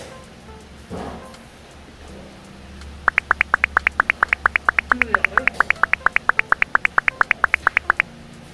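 A cartoon-style comedy sound effect: a fast, even run of short high-pitched blips, about seven a second, starting about three seconds in.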